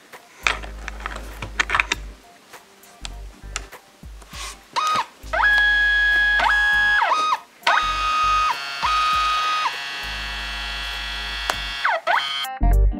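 Kodak Mini Shot's built-in printer running a print. A few clicks are followed, about five seconds in, by a motor whine that holds steady pitches and slides up and down as the paper is fed out.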